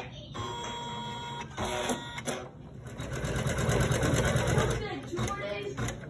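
Computerized embroidery machine running and stitching, its needle mechanism chattering rapidly and steadily, louder from about three to five seconds in.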